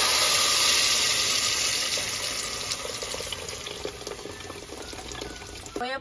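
Red guajillo chile sauce hitting hot lard in a pot and sizzling loudly as it is poured in, the hiss slowly dying down as the pot fills. This is the sauce being fried (refried) in the fat.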